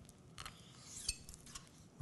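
Knife slicing through a raw halibut fillet on a cutting board: faint, with small knocks of the blade on the board about half a second and a second in.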